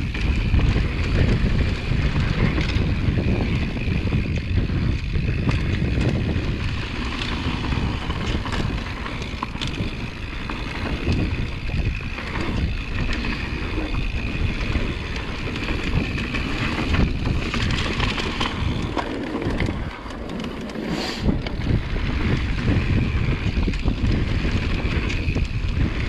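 Wind buffeting the microphone over the rumble of a full-suspension mountain bike descending a dry dirt trail. Tyres run over loose dirt and the frame and chain rattle on the bumps. There is a brief lull about twenty seconds in, then a short hiss.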